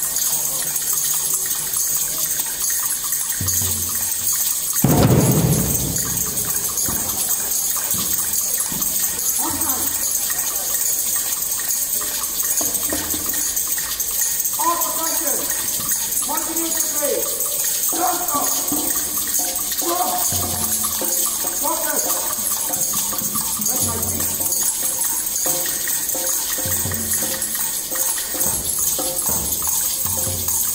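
Drum-circle hand percussion played as a steady, rain-like hiss rather than beats, with a louder swooshing swell about five seconds in. People talk over it.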